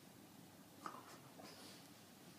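Faint scratching and rustling of a dog rubbing and rolling on a carpet, with a short sharp click just under a second in.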